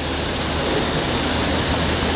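Aerosol spray can of thin black spray paint hissing in one continuous spray, close to a wooden beam. The hiss builds a little and then holds steady.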